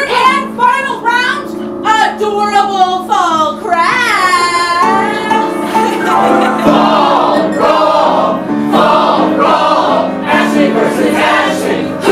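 A cast singing a musical number over live instrumental accompaniment. About four seconds in, one voice holds a high note that rises and falls. From about six seconds the voices sing together as a group.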